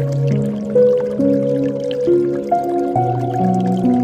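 Slow, soft meditation piano music, one held note after another in a gentle melody, over faint dripping water.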